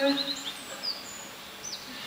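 Birdsong: a few short, high chirps and falling whistles, faint, after a held pitched sound dies away in the first moments.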